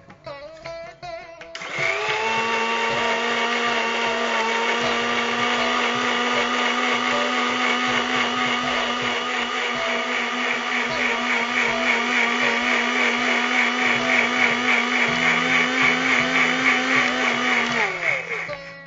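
Electric mixer grinder (mixie) with a steel jar switched on about a second and a half in, running at a steady pitch as it grinds itti leaves with curd and water into juice, then cut off near the end.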